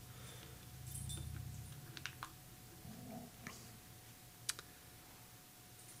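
A few faint, sharp clicks spaced over several seconds, typical of small plastic objects such as a remote control being handled. A low hum comes in for about a second near the start, and a faint steady tone sits behind the clicks.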